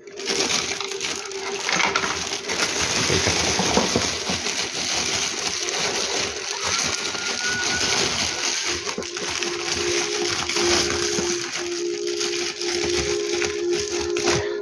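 Thin clear plastic bag rustling and crinkling continuously as hands push an object into it and gather and twist its neck closed.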